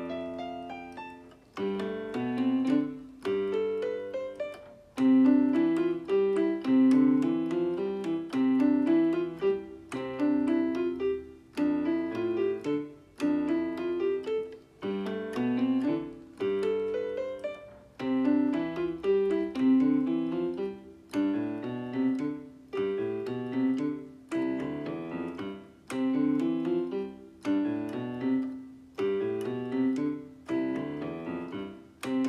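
Piano keyboard playing a two-handed fingering exercise: quick stepwise runs of notes, mostly rising, repeated in short phrases with a new phrase about every one and a half seconds.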